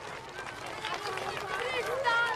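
A group of children's voices chattering and calling out in many short, high-pitched overlapping snatches.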